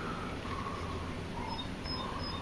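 Distant birds calling with short chirps and whistled notes over a low, steady background rumble.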